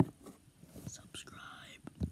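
A boy whispering softly close to the microphone, after a sharp click right at the start.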